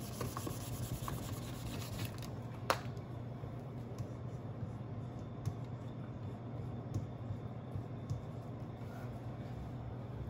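Faint rubbing and scratching of a small whiteboard being wiped clean and written on with a marker, over a steady low hum, with a sharp little tap about three seconds in.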